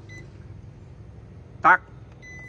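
The control panel of a National SR-SE101 IH rice cooker gives one short, high beep as its cook button is pressed, starting a cooking cycle. A low steady hum runs underneath.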